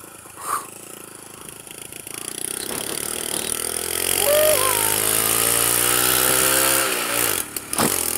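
Honda C90's 90cc single-cylinder four-stroke engine pulling away with two people aboard, its revs rising steadily after a quiet couple of seconds, then falling with a brief dip near the end. Wind rushes over the microphone as speed builds.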